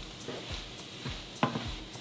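Wooden spatula stirring and scraping sautéed poblano pepper strips in a nonstick frying pan over a soft, steady sizzle, with one sharper stroke about one and a half seconds in.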